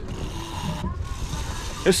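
Boat engine running at trolling speed, a steady low rumble with wind and water hiss over it.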